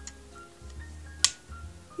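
A single sharp snap about a second in, as a rubber band is stretched over a small metal jar lid, over quiet background music.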